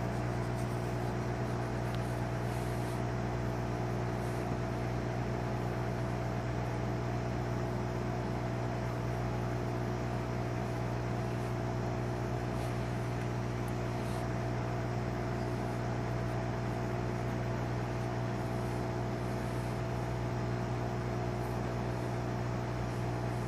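Steady electrical machine hum, with a strong low tone and a few fainter higher tones, unchanging in level.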